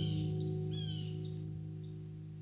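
Final chord of two acoustic guitars ringing out and slowly fading at the end of a song. A small bird chirps over it a couple of times, short falling notes.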